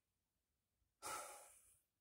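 Near silence, then a single short breath about a second in, a sigh-like exhale or intake that fades within half a second.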